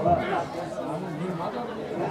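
Several people talking over one another: indistinct overlapping chatter, no music.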